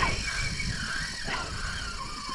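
A fishing reel's drag whining with a wavering pitch as a big tarpon pulls line off the spool, over a steady rumble of wind on the microphone.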